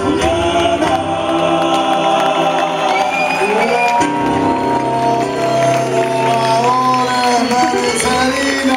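Male voices singing a cueca in close harmony over acoustic guitars, holding long sustained notes that slide from one chord to the next, closing out the song near the end.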